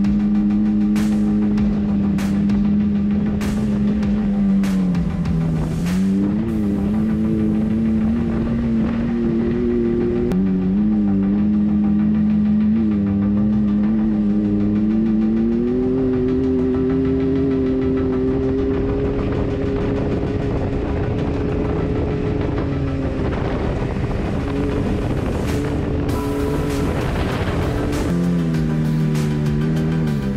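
Can-Am Maverick X3's three-cylinder engine running hard at a steady high pitch as it drives through mud and fields. The pitch dips and climbs again several times: it drops around five seconds in, rises again and holds higher from about sixteen seconds, and falls away near the end as the throttle eases.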